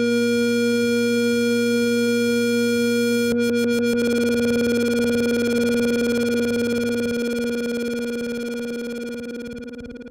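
Synthesizer holding one buzzy square-wave note over a lower bass tone, with a short stutter of clicks a little over three seconds in. The bass tone drops out about seven seconds in, and the held note fades away as the minimal techno track ends.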